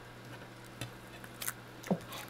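Faint room noise with a few soft clicks and taps as a frog is fed a cockroach held in metal tweezers, then a sharper snap near the end as the frog strikes and takes the roach.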